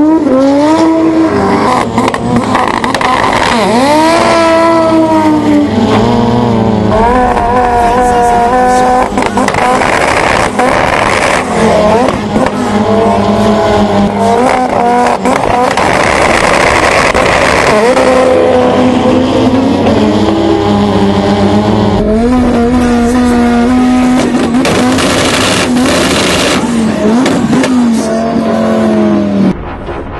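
Turbocharged Fiat Coupé drag car's engine revving up and down again and again, at times held steady at high revs on a two-step launch limiter, with sharp pops as the exhaust spits flames.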